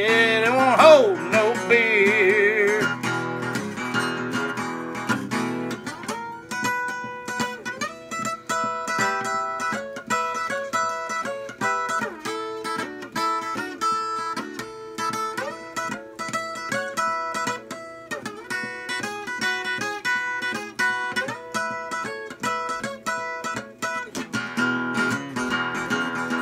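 Acoustic guitar instrumental break: single notes picked in a lead line over the chords. A held sung note with vibrato fades out in the first few seconds, and strumming picks up again near the end.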